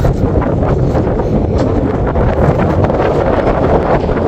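Wind buffeting the microphone: a loud, steady low rushing noise with no break.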